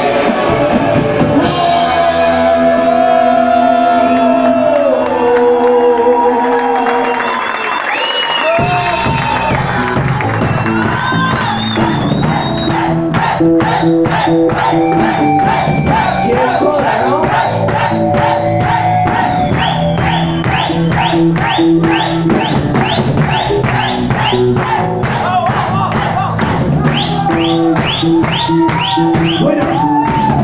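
Live rock band playing amplified electric guitars and a drum kit. For the first several seconds held guitar chords ring out with sliding pitches. The low end cuts out briefly near eight seconds, then the band kicks into a fast, steady beat with drums and cymbals under the guitars.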